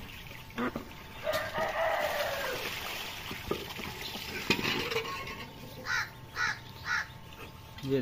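Newly hatched ducklings peeping and an adult duck calling. A dense run of calls comes about a second and a half in, and three short, evenly spaced calls come near the end.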